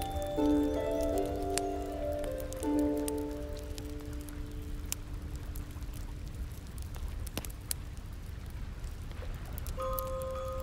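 A slow piece of music with long held notes fades out over the first few seconds. It leaves a campfire ambience: a low steady rumble with scattered sharp crackles of burning wood. New bell-like notes start right at the end.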